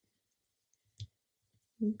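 Mostly quiet room tone with a single short click about halfway through, then a spoken word starts at the very end.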